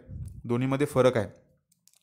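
A man's voice speaking for about a second, then a short pause with a faint click near the end.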